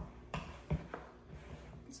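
A spoon stirring thick, sticky bread dough in a glass mixing bowl, giving a few light, irregular knocks against the bowl.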